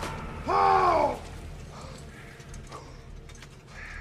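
A man's short, loud cry about half a second in, its pitch rising and then falling. After it comes a low, steady rumble with a few faint clicks.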